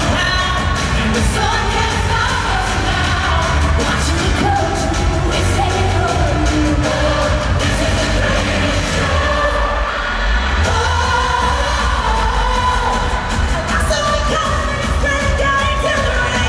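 Singers performing a pop-style show tune live over an amplified band with a heavy bass and drum beat, through an arena sound system. The bass briefly thins about nine seconds in, then comes back full about a second later.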